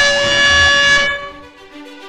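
An air horn blowing one loud, steady note that cuts off about a second in, followed by quieter background music.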